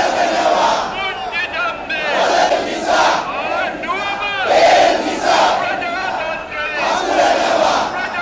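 A crowd of protesters chanting slogans together: many voices shouting short phrases one after another.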